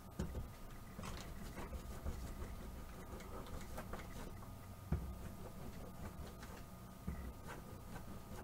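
Soft handling noise as a plastic smoothing tool rolls a soap rope back and forth on plastic wrap: light rubbing and crinkling with scattered small taps and a few dull thumps, over a faint steady hum.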